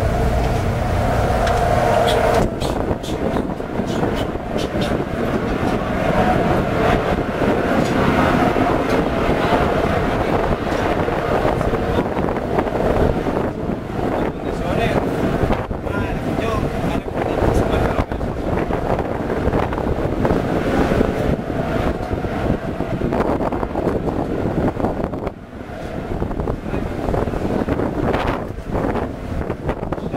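Wind buffeting the microphone on an open ship's deck, a rough, gusty rushing noise, with indistinct voices under it. Music that had been playing cuts out about two seconds in.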